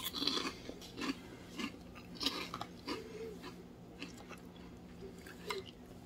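A person chewing a mouthful of food: soft, irregular crunches and mouth sounds, a few each second at first and sparser later.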